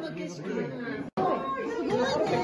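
A group of people talking over one another in excited chatter. The sound drops out completely for an instant just after a second in.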